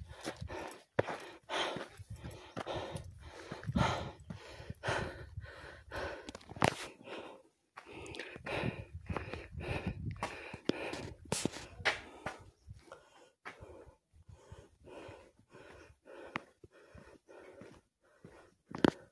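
A person walking on dirt ground, with short, fairly regular footsteps and breathing close to the microphone; the steps grow sparser and softer in the last few seconds.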